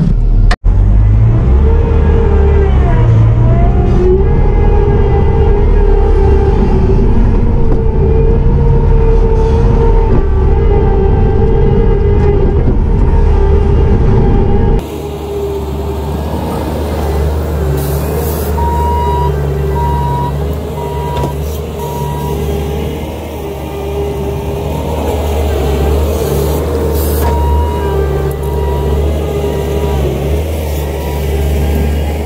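Bobcat T650 compact track loader's diesel engine and hydraulics running steadily under load while grading, heard loud from inside the cab with a steady whine. About halfway through it is heard from outside at a lower level, and in the second half a regular on-off beep from the loader's reverse alarm sounds as it backs up.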